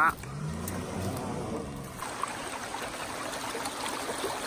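A utility vehicle's engine running with a slowly changing pitch for the first couple of seconds, then water rushing steadily through a breach in a beaver dam.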